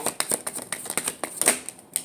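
Tarot cards being shuffled and handled by hand: a quick, irregular run of card clicks and flicks, with a sharper snap about one and a half seconds in.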